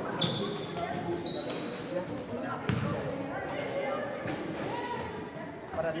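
Basketball gym sounds under background voices: a few short sneaker squeaks on the hardwood court in the first second and a half, then a single basketball bounce on the floor nearly three seconds in.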